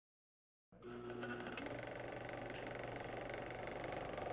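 A small machine running with a fast, even clatter, starting suddenly about three quarters of a second in after a moment of silence.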